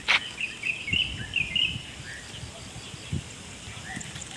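Small birds chirping, a quick run of short high chirps in the first two seconds and a few more later. A sharp knock right at the start and scattered low thumps sound under them.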